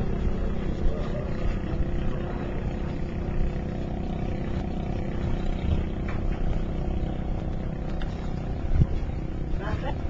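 A boat's engine running steadily with a low hum, over a rumble of wind and water noise. A voice is heard briefly near the end.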